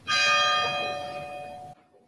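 A bell struck once, ringing with several steady tones that fade slowly, then cut off suddenly near the end.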